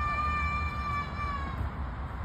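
A child's long, high-pitched squeal held on one pitch for about a second and a half, dropping slightly as it ends.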